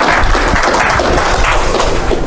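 Audience applauding, a dense, steady clapping, with a low rumble coming in underneath about a quarter second in.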